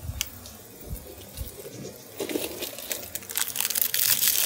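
Rustling and crinkling of plastic packaging being handled as a microphone is taken out of its case, with a few light clicks and taps; the crinkling grows denser near the end.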